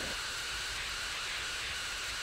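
Steady, even hiss with no distinct events.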